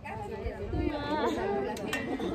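Several people talking at once in casual background chatter, with wind rumbling on the microphone.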